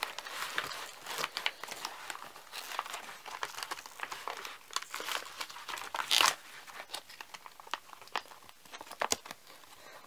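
Plastic packaging of an OLAES modular bandage crinkling as it is worked out of a tight nylon first-aid pouch: a run of irregular crackles and rustles, with one louder crinkle about six seconds in.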